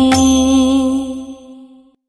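End of a devotional song: one long held note over the accompaniment, with a ringing strike just after the start, fading out about a second and a half in.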